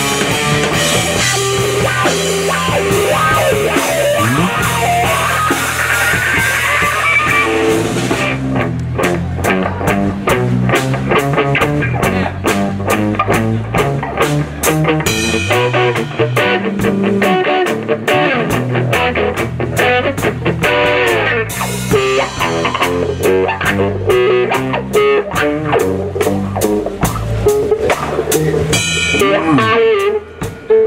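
Live blues band in an instrumental break: electric guitar lead over a drum kit and a second guitar, with a rising guitar run about four to eight seconds in and crisp drum strokes after that.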